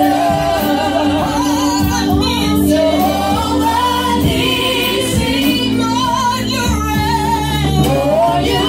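Several women singing a gospel song together into microphones, amplified, over a steady instrumental accompaniment.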